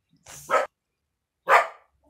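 Two short, loud animal calls about a second apart.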